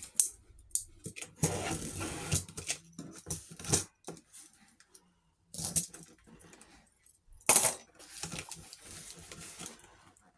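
A cardboard parcel being handled and opened: irregular rustling, scraping and crinkling of box and packaging with sharp clicks and knocks, the loudest a sharp crack about seven and a half seconds in.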